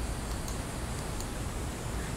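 Steady low background hiss of an outdoor screened patio, with a few faint, sharp high ticks scattered through it.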